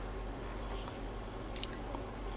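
Quiet room tone with a steady low hum, and one faint click about one and a half seconds in.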